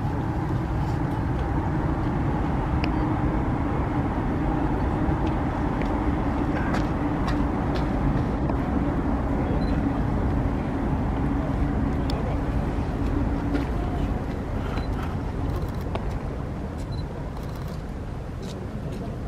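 A steady low engine-like rumble with a hum that fades out about three-quarters of the way through, over which baseballs pop sharply into leather gloves at irregular intervals during a game of catch.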